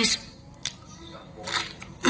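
A few sharp crunches of crispy potato-stick chips (keripik kentang Mustofa) being chewed, with quiet gaps between them.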